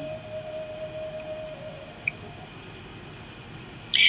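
A pause on a live audio call: low steady line hiss, with a faint steady hum-like tone in the first second and a half that fades out.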